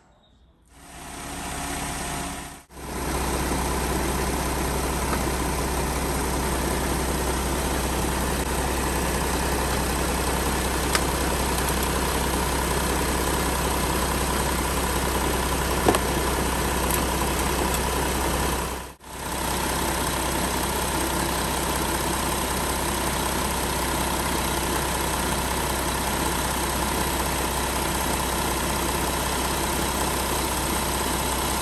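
Car engine idling steadily, heard from under the car while the automatic transmission fluid warms to about 40–45 °C for a level check. The sound drops out briefly twice, and there is a single click about two-thirds of the way through.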